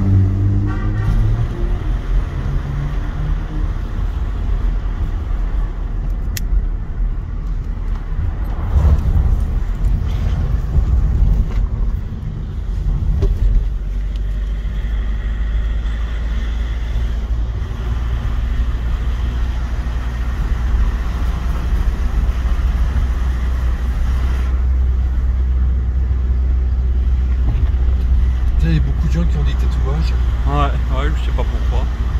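Car driving, heard from inside the cabin: a steady low rumble of engine and tyres on the road.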